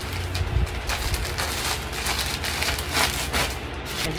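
Plastic shipping mailer bags rustling and crinkling in irregular bursts as they are handled and searched through.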